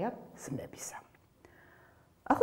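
A woman speaking Georgian softly for about a second, with hissing 's' sounds, then a short pause.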